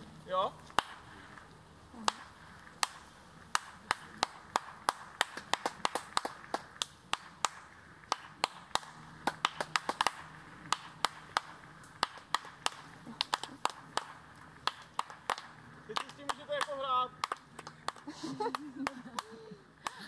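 Dozens of sharp hand claps from people out in an open field, at an uneven pace of a few a second. They are clapping to draw the peculiar echo that the landscape sends back in good weather. The claps thin out after about sixteen seconds, and a few voices follow.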